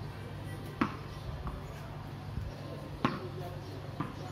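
Two sharp knocks of a ball, about two seconds apart, over a steady low background hum.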